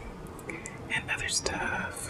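Close-miked plastic ketchup packet being squeezed: crinkling with a wet squish, in a run of short bursts starting about halfway through.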